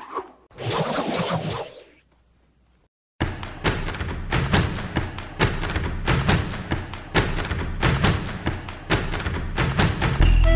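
A man laughing briefly, then about a second of silence, then a fast, driving drum beat of low thumps, roughly four hits a second.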